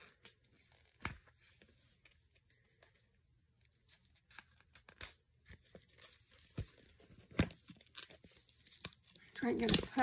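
Plastic wrapping being torn and crinkled open by hand, in scattered sharp crackles and rips, the loudest about seven and a half and eight seconds in. A voice starts speaking near the end.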